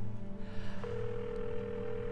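Telephone ringback tone heard through a phone earpiece: one steady tone lasting about a second and a half, starting about a second in, the signal that the call is ringing at the other end. Soft background music runs underneath.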